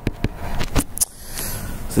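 Stylus tapping and scraping on a tablet PC screen while handwriting: a few sharp clicks in the first second, then a softer scratchy hiss.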